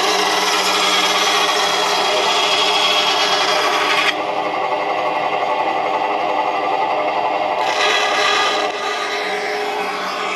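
Bandsaw with a quarter-inch blade cutting through a thin wooden guitar plate over the steady hum of its motor. The cutting noise stops suddenly about four seconds in and comes back for about a second near the end, with the saw running on between.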